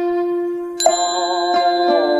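Closing music: a bell struck once, about a second in, ringing out over a steady held drone.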